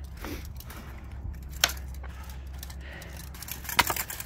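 Longsword blades clashing: two sharp metallic strikes about two seconds apart, the second one, near the end, the louder.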